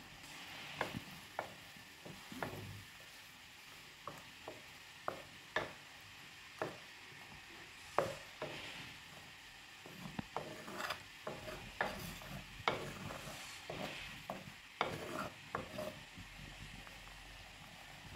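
A metal spoon stirring in an earthen clay pot, with irregular light clicks and scrapes as it knocks against the pot, over a faint sizzle. The spice powders are being mixed into the onion-tomato masala frying in oil.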